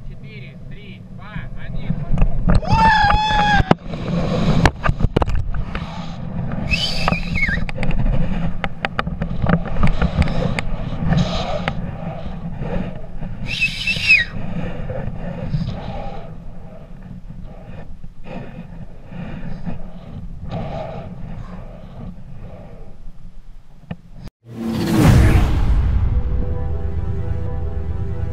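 Wind buffeting a helmet-mounted camera microphone during a rope jump's fall and swing, with high-pitched yells about three, seven and fourteen seconds in. Near the end the sound cuts out briefly and a loud whoosh effect leads into music.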